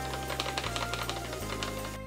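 Background music over a rapid, dense patter of small ticks and rustles: flour poured from its plastic bag into a stainless steel tray.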